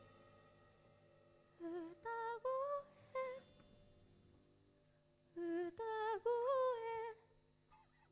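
A girl's voice singing alone, with no instruments, in two short soft phrases of a few notes each, one about a second and a half in and one just past the middle, with a quiet pause between.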